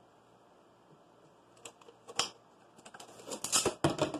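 Handling noise from a plastic water bottle and rubber bands: a quiet start, then a few sharp clicks, and a denser run of clicks and rustles near the end.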